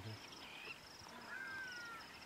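Faint, high-pitched insect chirping in short pulses that repeat evenly. A faint, drawn-out falling whistle comes in the second half.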